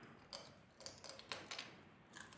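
Faint, short crunches and clicks, about half a dozen spread through the two seconds, from biting into a whole tiny soy-marinated raw crab, shell and legs included.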